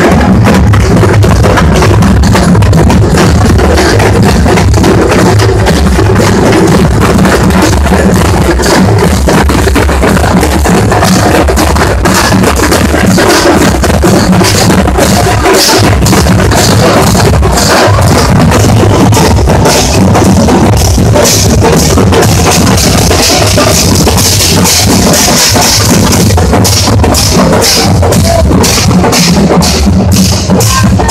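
Loud music with fast, driving drumming, the drum strokes packed close together and unbroken.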